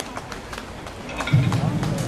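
A few scattered hand claps from the crowd. About a second in, a low, rapid drumming starts up and carries on.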